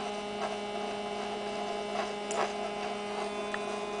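Steady electrical hum from a running single-magnet Bedini-type pulse motor and its coils: one low, even tone with overtones.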